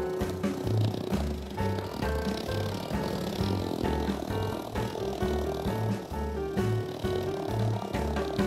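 Background music with a steady bass beat and held melodic notes.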